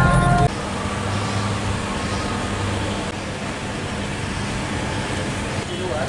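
A louder sound with held tones cuts off abruptly about half a second in. It gives way to steady road-traffic noise with a low hum.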